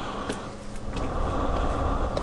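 Low steady rumble that grows louder about a second in, with a few sharp clicks over it.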